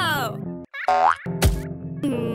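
Cartoon sound effects over children's background music: a squeaky voice-like sound sliding down in pitch at the start, then a quick rising boing-like glide and a sharp hit about one and a half seconds in.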